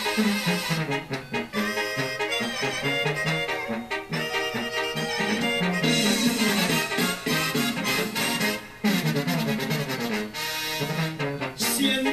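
Mexican banda brass band playing an instrumental passage: trumpets and trombones carry the melody over tuba and drums with a steady beat. The music briefly drops out about three-quarters of the way through, then comes straight back in.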